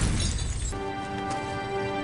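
The noisy tail of a crash with shattering glass dies away, and under a second in, soft film-score music with long held notes takes over.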